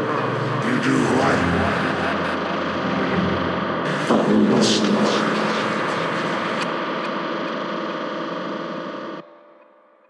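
Intro of a dubstep track: a sampled comic vocal of sniffs and odd voice noises, run through effects, over a sustained electronic pad. The whole mix fades out and drops away to near silence a little after nine seconds in.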